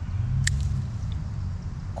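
A low rumble that swells and fades, with one sharp snip of scissors cutting through thyme stems about half a second in.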